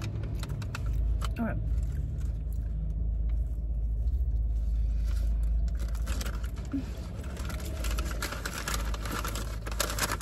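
A person biting into and chewing a glazed cronut, with crinkling of the paper pastry bag near the end, over a steady low rumble inside the car.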